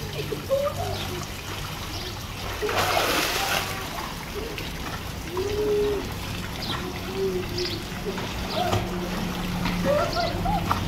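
Swimming-pool water splashing as children and a dog swim, over the steady trickle of a water jet arcing into the pool. A louder splash comes about three seconds in.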